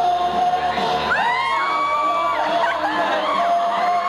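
Loud live stage music with an audience cheering and whooping over it; held notes slide up into long high calls.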